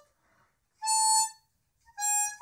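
Harmonica: a phrase dies away at the start, then after a short pause a single held note sounds about a second in, and the next phrase begins near the end.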